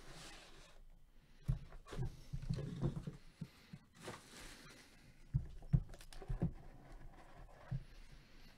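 Cardboard trading-card hobby box being handled and opened on a table: scattered soft knocks and rustles, with a cluster of them a couple of seconds in and a few more later on.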